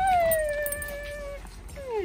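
A dog whining: one long drawn-out whine that sinks slightly in pitch, then a short whine near the end that drops steeply.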